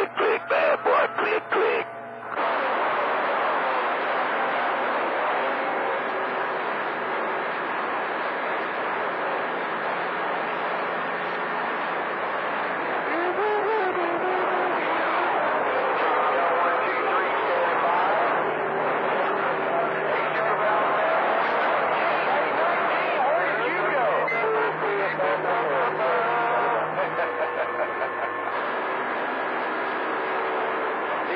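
CB radio receiver on channel 28 picking up distant skip: garbled, hard-to-follow voices buried in static, with steady low whistling tones beneath. The signal chops in and out for the first two seconds, then holds steady as the band fades.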